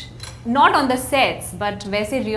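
People talking in a room, with a light clink of a china teacup.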